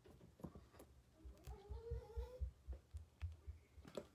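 Faint knocks and clicks of a plastic orifice reducer being pressed by hand into the neck of a small roller bottle on a counter. Partway through comes a faint wavering pitched sound lasting about a second.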